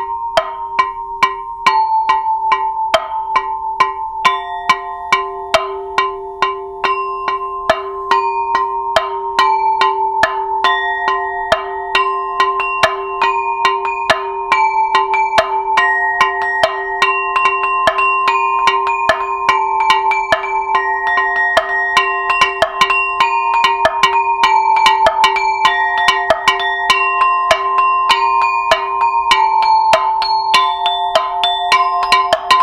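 Multi-percussion setup of a terra cotta flower pot, a wooden plank and metal pipes struck with keyboard mallets, playing a 3/4 groove built on a dotted-eighth pattern. It is a steady stream of strikes whose ringing pipe tones overlap, getting a little busier and louder after about ten seconds.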